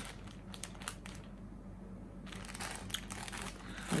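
Crinkling of the plastic wrapper on a pack of cotton pads as it is handled and opened, in two spells of crackling with a short pause in between.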